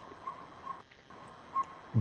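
Quiet pause in a video-call audio feed: faint steady hiss with a few soft, brief tones, dropping almost to silence for a moment around the middle.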